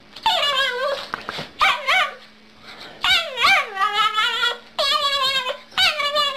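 A small curly-coated dog giving a string of drawn-out, high-pitched whines that waver and glide up and down in pitch. There is a short pause about two seconds in, and the longest whine comes after it.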